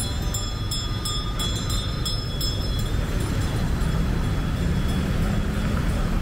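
City road traffic: a steady rumble of cars and motorbikes passing on a multi-lane street, with faint high whining tones in the first half and one engine note rising slightly near the end.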